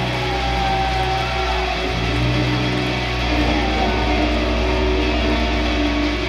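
Live rock band with electric guitars and bass playing an instrumental passage, the guitars holding long ringing notes over a steady low bass note.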